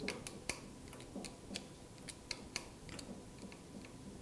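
8 mm open-end wrench clicking against the hose fitting screw of a Magura MT6 hydraulic brake lever as the screw is tightened to crush the olive and seat the brake hose. The clicks are faint, small and irregular.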